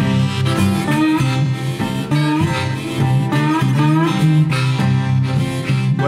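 Blues harmonica played from a neck rack, bending notes up and down, over a steady, repeating bass riff on an archtop guitar.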